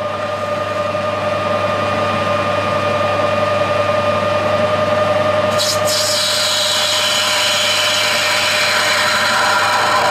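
Metal lathe running with a carbide tool cutting a bronze workpiece: a steady machine hum with a constant tone and the continuous hiss of the cut.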